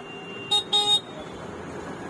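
A vehicle horn honks twice in quick succession, two short blasts about half a second in, over steady street noise.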